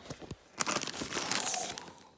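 Clear plastic bags crinkling and rustling as they are handled and pushed about. The crinkling starts about half a second in and runs for roughly a second and a half.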